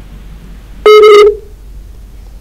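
A single loud telephone-line beep: one steady, flat tone about half a second long, a little under a second in, heard over the hiss of an open phone line as a caller's call is put through.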